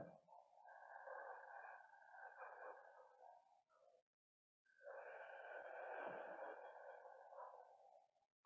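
Faint, slow breathing: one long drawn breath in for about three seconds, a brief moment of complete silence, then one long breath out, as in a three-part yoga breath.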